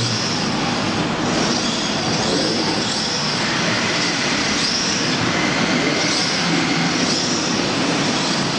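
Several rear-wheel-drive RC drift cars running together: the cars' electric motors whine, rising and falling in pitch again and again, over a steady hiss and squeal of hard drift tyres sliding on the track.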